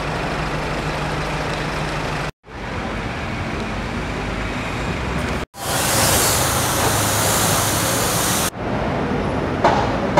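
A pressure washer jet hissing against a car's bodywork for about three seconds in the middle; it is the loudest sound. Before and after it is a steady hum of street traffic, broken by abrupt cuts.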